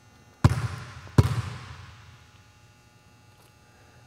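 A basketball bounced twice on a hardwood gym floor, about three quarters of a second apart, each bounce echoing through the large gym.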